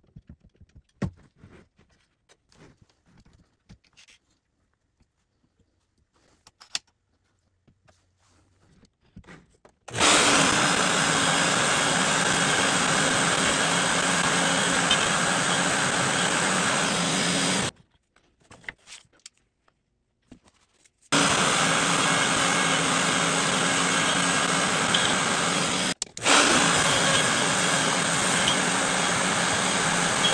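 Small handling clicks and taps for about the first ten seconds. Then a wood router on a PantoRouter joinery machine runs at speed, cutting quarter-inch vertical slots in a wooden workpiece. It runs for about eight seconds, stops, and starts again about three seconds later for the rest.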